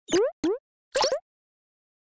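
Three quick cartoon pop sound effects within the first second or so, each a short upward sweep in pitch; the third is slightly longer than the others.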